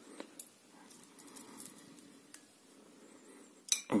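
Faint, scattered light clicks of cracked walnut shell and kernel pieces being picked apart by hand over a ceramic plate, over a low steady hum.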